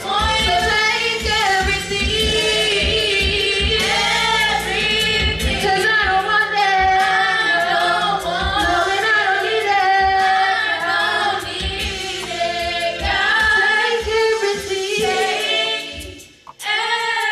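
Four women singing a gospel song together into microphones, with a low beat underneath that thins out about halfway through.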